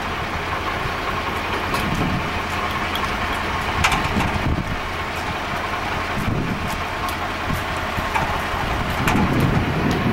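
A steady engine drone with a low hum underneath and a few light clicks.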